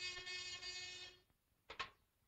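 A steady buzzing radio call-signal tone, which cuts off about a second in. Two short clicks follow near the end.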